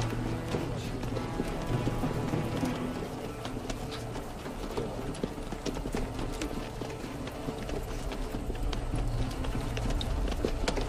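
Horses' hooves clip-clopping in an irregular patter, with film score music playing underneath.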